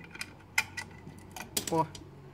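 A one-dollar coin pushed into a brass coin slot and dropping through the coin mechanism: several sharp metallic clicks, the loudest about half a second and a second and a half in.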